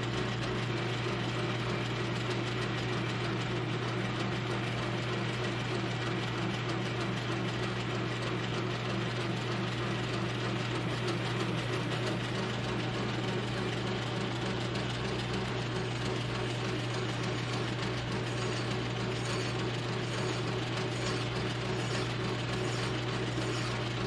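Old metal lathe running steadily, turning down a steel hardy-hole adapter that is slightly too tight to fit: an even machine hum that does not change in pitch or level.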